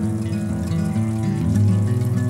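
Instrumental background music: a steady run of sustained notes.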